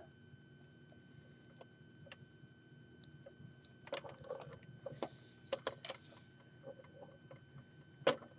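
Faint scattered clicks and rustling of fingers handling a small plastic Lego robot figure as its joints are moved, busiest a few seconds in.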